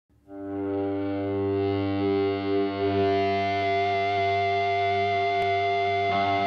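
Opening of a psychedelic rock track: a single sustained, distorted and effects-laden note swells in over the first second and is held steady, slowly brightening, with no other instruments yet.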